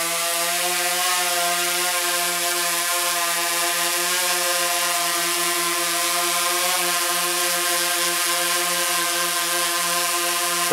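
DJI Phantom 3 Advanced quadcopter hovering close overhead, its propellers giving a steady hum of several even tones that waver slightly in pitch. It is carrying the added weight of a flashlight, which makes it a little louder than usual.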